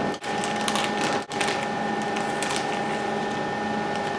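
Thin plastic bag crinkling and rustling irregularly as it is pulled open and lifted off, over a steady electrical hum.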